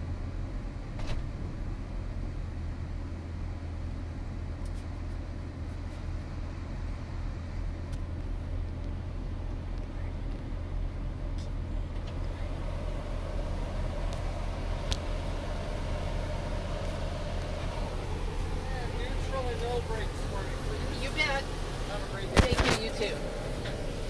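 Steady low hum inside a Toyota RAV4's cabin as it sits idling. Near the end the phone is moved, giving a sharp handling knock.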